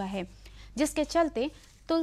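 Speech only: a woman narrating news in Hindi, with two short pauses.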